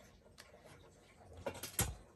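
Light clicks and knocks from the plastic and metal parts of a vintage RC10 buggy being handled. A louder knock with a dull thump comes near the end as the buggy is set down on its plastic stand.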